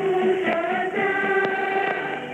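A choir singing long held notes, received as KSDA's AM shortwave broadcast on 15625 kHz through a Sony ICF-SW77 receiver. The sound is narrow and muffled, with nothing above about 4 kHz, and a few faint static clicks come through.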